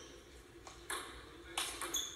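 Table tennis rally: a celluloid/plastic ball clicking sharply off bats and table several times, each hit with a short high ring, heard through a TV speaker.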